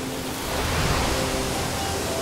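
Sound effect of sea waves crashing: a rush of water noise that swells about half a second in and then eases off, with faint soft music held underneath.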